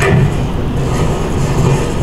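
Steady rolling rumble of a small object rolled by hand across a wooden board, played through the hall's loudspeakers.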